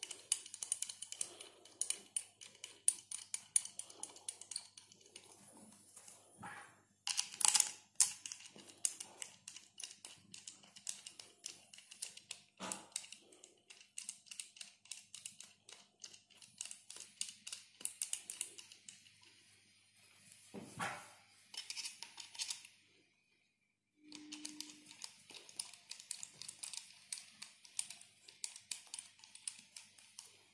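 Faint, rapid light clicks and taps of small stainless steel parts being handled as a half-inch piston lift check valve's cover is seated and its cover bolts are fitted, with a few louder knocks. The clicking stops briefly a little before three-quarters through.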